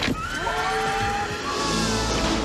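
Trailer soundtrack: a sudden hit at the start, then long held, slightly gliding high notes, with a rushing swell near the end.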